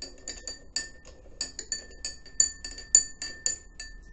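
Metal spoon stirring salt into water in a glass tumbler, clinking against the glass about five times a second, each strike ringing briefly. The clinking stops just before the end as the spoon is lifted out.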